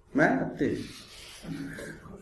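A man's voice saying a short word, then a soft rubbing, scraping noise with a brief voiced sound near the end.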